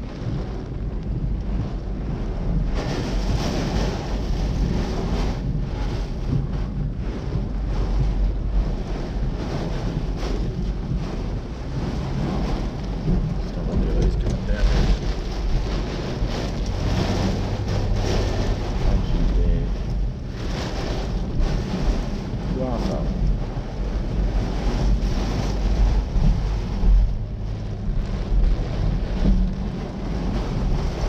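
Hurricane-force cyclone wind and driving rain heard from inside a car: a loud, deep rumble that swells and eases in gusts without letting up.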